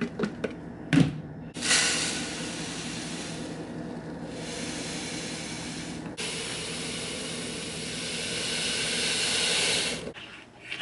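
Dry grits poured from a cardboard box into a clear plastic storage container: a steady hiss of falling grains that builds toward the end and stops at the end. Before the pour, the plastic container is handled, with clicks and one sharp click about a second in.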